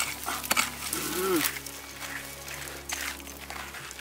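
A metal hand digging tool scraping and knocking in dry, stony soil, with several sharp scrapes in the first half second, then softer rustling of gloved hands in the loose dirt.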